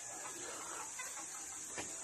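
Faint, scattered chicken clucks over a steady high hiss.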